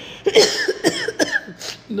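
A woman coughing several short times in quick succession into her hand.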